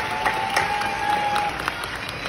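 Audience applauding, with many hand claps, thinning out near the end. A single held tone sounds over the clapping for about the first second and a half.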